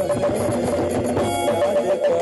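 Live band music: an instrumental passage of a Sindhi devotional song, a melody line running over a steady accompaniment.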